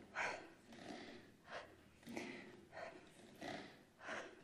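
A woman's faint, quick breathing under exertion while holding a plank: about six short breaths in four seconds, evenly spaced.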